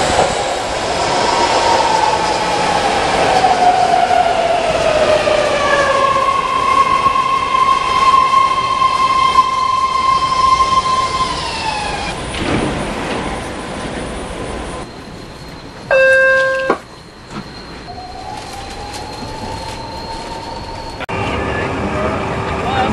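BART train pulling into an underground station: a loud whine falling in pitch as it brakes, then a steady whine that drops away as it stops. A short loud electronic tone sounds about two-thirds of the way in, and a whine rises slowly as the train pulls away.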